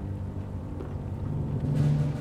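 A low, steady rumbling drone from the tense background score, swelling to its loudest near the end.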